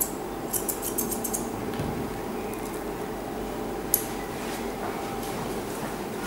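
Grooming scissors snipping through a West Highland terrier's head hair: a quick run of about eight snips in the first second and a half, then a single sharp snip about four seconds in, over a steady low room hum.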